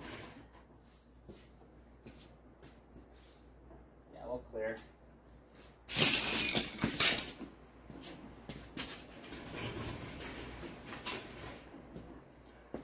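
Metal clattering and scraping from handling a shop engine hoist that holds a Ford 5.0 V8. It comes as one loud burst about six seconds in, lasting just over a second, followed by a few seconds of quieter rattling and shuffling. A short grunt-like vocal sound comes just before the burst.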